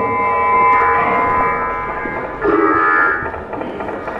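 Live laptop electroacoustic music made in Max/MSP: dense layers of sustained electronic tones with no beat, with a louder, brighter swell about two and a half seconds in that eases off about a second later.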